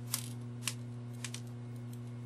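A few faint, sharp clicks of tiny decorative rocks dropping and tapping onto a craft tray, over a steady low hum.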